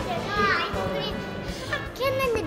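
Background music with a child's high voice briefly calling out about half a second in.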